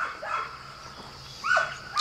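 Brief, whine-like animal calls: a short one at the start and a falling one about one and a half seconds in.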